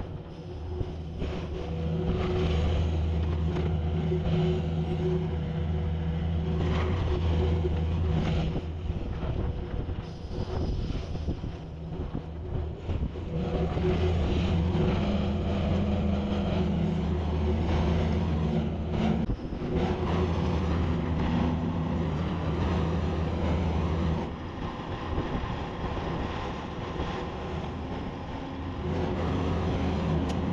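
Kubota skid-steer loader's diesel engine running steadily, its pitch rising and falling as it works lifting hay bales, with a few knocks.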